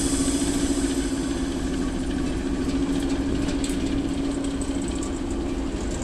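Class 08 diesel shunter's engine idling, a steady low hum with a constant pitch.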